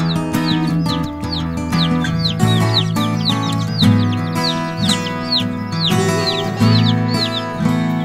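Instrumental background music with Isa Brown chicks peeping over it: short, high, falling peeps repeating a few times a second.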